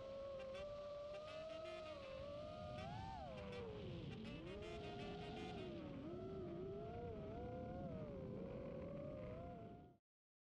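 FPV quadcopter's brushless motors and propellers whining as heard from the onboard GoPro, the pitch rising and falling with throttle: a sharp rise about three seconds in, dips around four and six seconds. The sound cuts off suddenly at the end.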